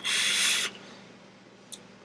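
A person blowing out a mouthful of e-cigarette vapour: one short breathy hiss lasting under a second, then quiet room tone.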